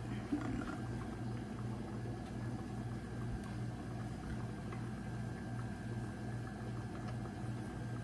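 A steady low hum that pulses a little under three times a second, like a running machine or appliance, with a few faint clicks.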